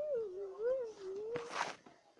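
A puppy whining: one long, wavering whine that dips and rises in pitch, followed about one and a half seconds in by a short hissing noise.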